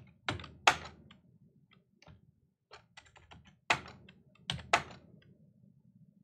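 Typing on a computer keyboard: an irregular run of key clicks, with a few much louder strokes among them.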